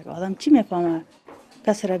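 Speech only: a woman speaking in a language other than English, pausing briefly about a second in before speaking again.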